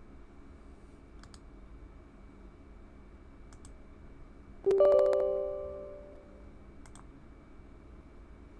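A few scattered mouse clicks, then about two-thirds of the way through a Windows system alert chime: a single pitched ding that starts sharply and rings away over about a second and a half.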